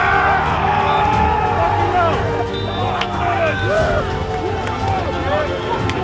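Several people shouting and cheering in celebration, with a louder burst of shouting at the start, over background music.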